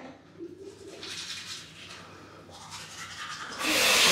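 Teeth being brushed with a manual toothbrush: a soft, repeated scrubbing. Near the end it gives way abruptly to a louder steady hiss.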